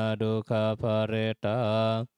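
Pali chanting by a low male voice, recited on one nearly unchanging pitch, syllable by syllable with short breaks.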